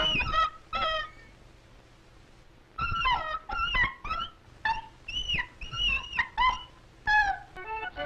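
Cartoon dog yelps from an early sound-film soundtrack: short, high calls that slide up and down in pitch. A few come at the start, then after a pause of over a second a quicker run follows.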